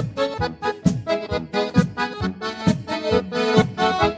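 Accordion playing an instrumental break in a gaúcho folk song, over a steady beat of bass and drums.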